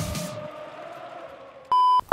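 The last held note of a promo's background music fading away, then, near the end, a short loud electronic beep at one steady pitch.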